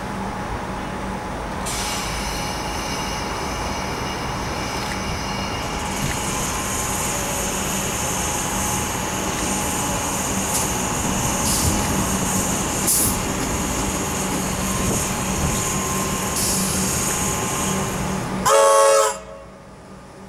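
Comeng electric suburban train running into the platform, with high-pitched wheel squeal over the running noise as it slows. Just before the end it gives a short, loud horn toot, and the sound then drops away.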